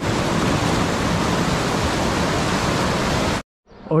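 White-water mountain stream rushing over boulders: a steady, full rush of water that cuts off suddenly about three and a half seconds in.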